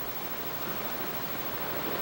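Steady, even outdoor ambience hiss from a film soundtrack, with no pitch or rhythm.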